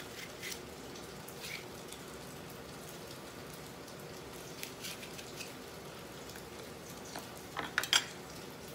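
Light taps and knocks of halved bitter melon pieces being handled on a wooden cutting board, a few seconds apart, over a steady low hum. Near the end comes a louder cluster of sharp clicks as a metal spoon is set down.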